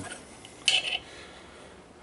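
A bronze D slide valve and its steel bolt clink once, briefly, against a steel work surface as the valve is turned over by hand, about two-thirds of a second in.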